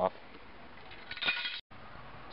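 A brief metallic clink of a steel angle-iron cross brace a little over a second in, cut off abruptly by an edit.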